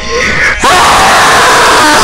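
A boy's long, loud yell, held on one pitch, starting about half a second in.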